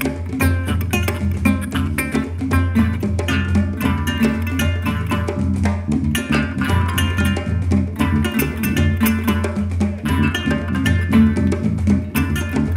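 Live hand-drum ensemble playing music: djembes and other drums in a fast, dense rhythm, with a plucked string instrument's melody over them.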